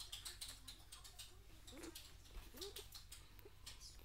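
Three-day-old Belgian Shepherd puppies suckling at their mother's teats: faint, rapid wet clicks and smacks, with two brief soft squeaks in the middle.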